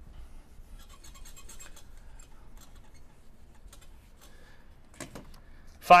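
Faint rubbing and light scratching of a whiteboard being wiped clean with an eraser, with scattered small ticks that are densest about a second in.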